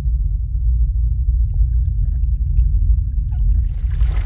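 Hydraulophone (water organ) played underwater to make a raw, deep rumbling bass sound, steady and loud. Near the end the hiss of water jets comes in.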